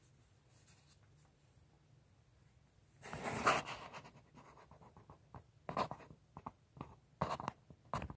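Handling noise close to the microphone: a quiet room for about three seconds, then a loud rustle and scrape, followed by a run of irregular small clicks and scrapes.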